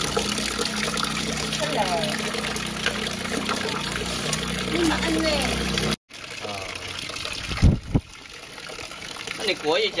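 Water pouring from a pipe onto wet concrete, a steady rushing splash, stops abruptly about six seconds in. After that it is quieter, with two thumps just before eight seconds.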